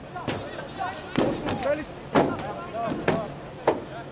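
Footballers shouting to each other across the pitch, cut by four sharp knocks; the loudest comes about two seconds in.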